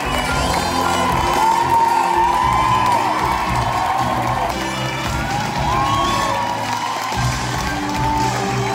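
Theatre audience cheering and whooping over music, with repeated rising-and-falling cries of "woo" above a loud, steady crowd noise.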